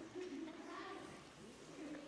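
Faint young children's voices, a held note for about a second followed by a gliding one.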